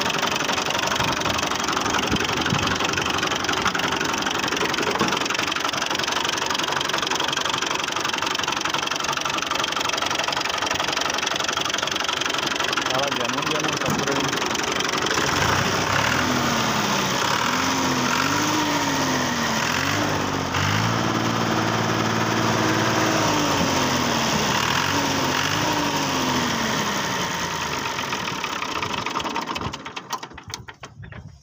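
Fiat 480 tractor's three-cylinder diesel engine running at idle, then shut off just before the end. Through the second half a pitched sound rises and falls in repeated swells over the engine.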